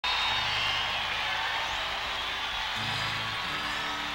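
A country-rock band playing live in an arena: sustained low notes that shift pitch a few times, heard over crowd noise.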